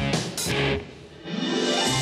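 Guitar-driven background music that drops away about halfway, followed by a rising sweep leading into the next shot.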